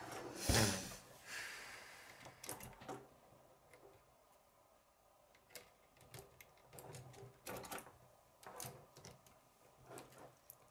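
K'nex plastic rods and connectors being handled and pushed together on a wooden tabletop: scattered clicks and knocks, with a heavier thump about half a second in.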